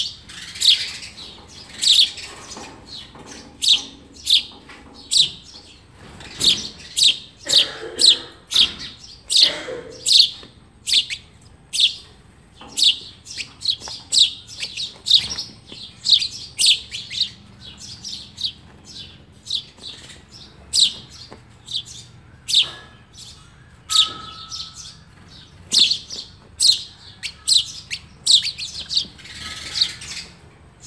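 Well-grown house sparrow nestlings, a day from fledging, chirping from the nest. Short, high chirps repeat steadily, one to two a second.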